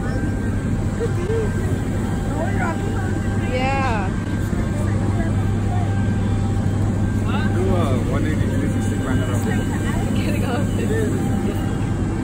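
Steady low drone of jet aircraft running on an airport apron, with a faint steady whine above it and snatches of people's voices over the top.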